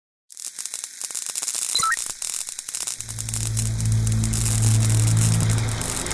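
Hissing, crackling static that starts just after a moment of silence, joined about three seconds in by a steady low bass drone: a produced intro soundtrack of static effect and music.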